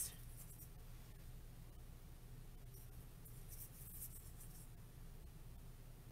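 Faint rustling and scratching of ribbon and deco mesh being handled on a wreath swag, a few brief scuffs about three to four seconds in, over a low steady hum.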